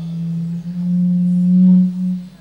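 A low, steady keyboard note is held with faint higher tones above it. It steps slightly higher about half a second in and swells near the end.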